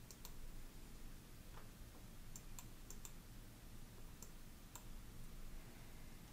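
Faint computer mouse button clicks, about nine of them, scattered irregularly, some in quick pairs.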